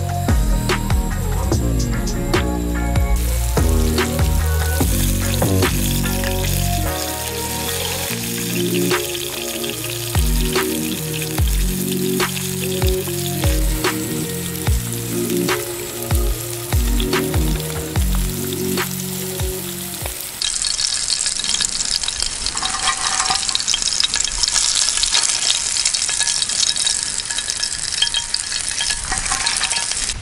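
Background music with a steady beat for about the first twenty seconds. Then it stops, leaving only the steady sizzle of cornmeal-coated carp pieces frying in hot oil in a pan.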